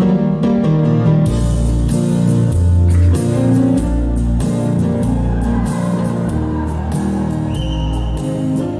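Instrumental intro of a recorded gospel backing track played over the stage PA, with bass, guitar and keyboard and a steady beat that comes in about a second in.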